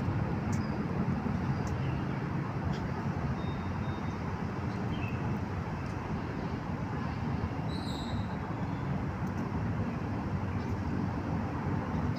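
Steady low rumbling outdoor noise with no clear rhythm, and a few faint high chirps.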